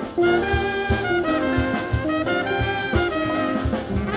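Live jazz ensemble playing: a horn section of saxophones and trumpet carries a melody over drum kit and bass, with steady drum hits under the changing notes.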